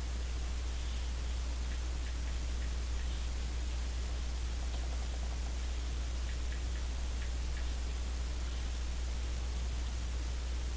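Steady hiss with a low hum underneath, and a few faint taps of an Apple Pencil on the iPad's glass screen a little past the middle, as it types on the on-screen keyboard.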